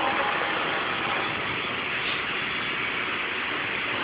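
Machinery running steadily: an even rushing hum with no clear pitch.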